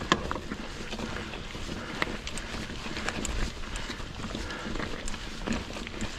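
Mongoose Ledge X1 full-suspension mountain bike rolling over a rocky trail: tyres running over stones, with frequent clicks and rattles from the bike, over a low rumble of wind on the microphone.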